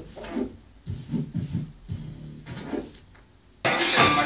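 Vinyl record on a DJ turntable being worked back and forth by hand, giving short, faint rubbing sounds with bending pitch. About three and a half seconds in, loud music from the record starts abruptly.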